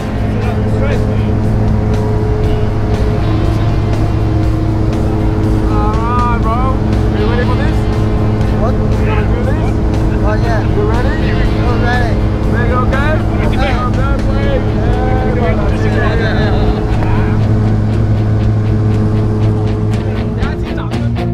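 Steady, even drone of an aircraft engine. From about six seconds in to near the end, a voice rises and falls in pitch over it.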